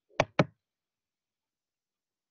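Two quick, sharp knocks about a fifth of a second apart, like a hard object tapped twice on a desk or close to the microphone.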